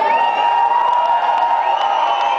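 Concert audience cheering, with long high calls that rise in pitch and then hold, one at the start and another near the end.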